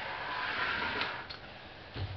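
A small metal amplifier chassis being slid across a wooden workbench: a scraping for a little over a second, ending in a couple of light clicks.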